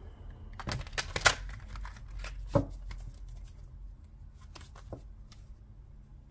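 A deck of cards being shuffled by hand. A quick run of card flicks comes about a second in, then a sharper snap at about two and a half seconds, followed by scattered lighter card taps.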